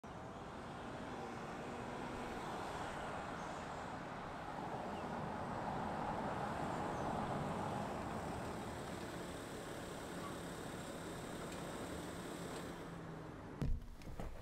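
A 2013 Porsche Cayenne's 3.0-litre six-cylinder turbodiesel driving up at low speed, its engine and tyre noise swelling as it nears and then easing off as it slows to a stop. A short thump near the end.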